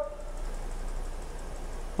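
A pause between spoken sentences that holds only a steady low hum and faint hiss of studio room tone.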